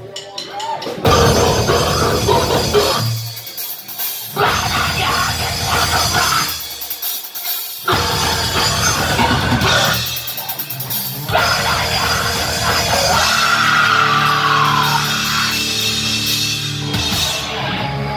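Live heavy metal band playing loud distorted guitars, bass and drum kit in a stop-start riff: the whole band cuts out abruptly three times for about a second and crashes back in each time. A high sliding note falls away about two-thirds of the way through.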